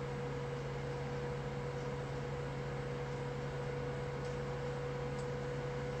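Steady low hum with a faint higher tone and an even hiss under it: background noise of the recording, with no distinct event.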